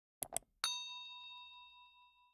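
Two quick mouse-click sound effects, then a bell ding that rings out and fades over about two seconds: the click-and-chime effects of a subscribe-button and notification-bell animation.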